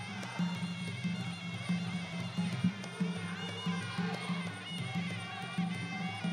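Traditional Khmer boxing music accompanying the fight: a reedy wind melody, as of a sralai, over steady drumming.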